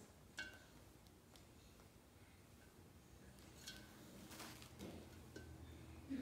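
Near silence with a few faint clicks and light clinks: a plastic syringe being handled against a glass vase of water.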